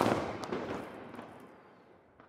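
Fireworks sound effect: a sharp bang at the start, then a crackling, sparkling tail that fades away over about two seconds.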